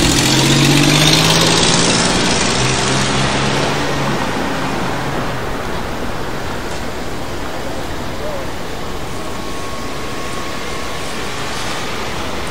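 City street traffic. A vehicle's engine hum and the rush of its passing are loudest in the first two seconds, then ease into a steady wash of traffic noise.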